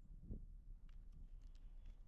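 Near silence: faint outdoor ambience with a few faint, brief clicks.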